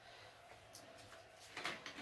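A quiet room, then faint clicks and rustles near the end as a plastic vinegar bottle is handled and its cap twisted open.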